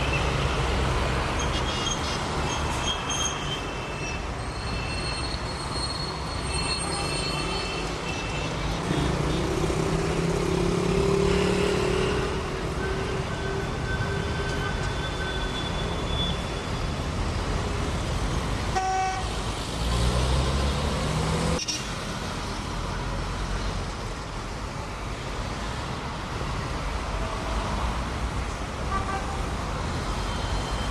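Busy city street traffic: cars, buses and motorbikes passing with vehicle horns honking, and short high-pitched peeps in the first several seconds.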